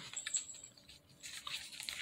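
Trident gum pack being handled and opened, the blister tray sliding out of its paperboard sleeve: faint crinkling and rustling with light clicks, denser in the second second.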